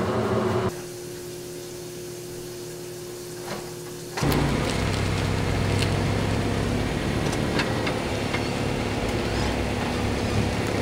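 A car running and rolling slowly, its engine rumble and tyre noise starting suddenly about four seconds in and going on steadily. Before it, a quieter steady hum with a held tone.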